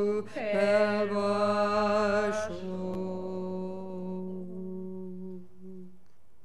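Group of voices chanting a Buddhist prayer in unison, with a slide in pitch about half a second in; from about halfway through the last syllable is held as one long note that fades away near the end.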